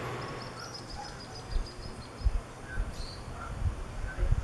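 A bird giving a rapid trill of high chirps for about two seconds, with a few scattered chirps after it. Low thuds of wind buffeting the microphone come several times and are the loudest sounds.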